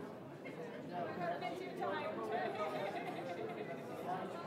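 Chatter of many people talking at once in a large chamber, overlapping indistinct conversations, a little louder from about a second in.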